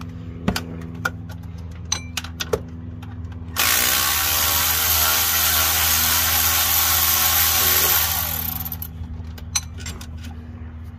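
Cordless power tool running in one burst of about four seconds, starting abruptly and trailing off, as an alternator mounting bolt is backed out; a few light metal clicks come before it.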